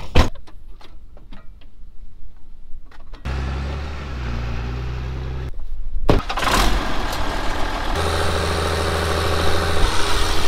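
A sharp knock near the start, like a vehicle door shutting, then a low, steady engine note. From about six seconds in, the stationary engine powering a centre-pivot irrigation well pump runs loudly and steadily.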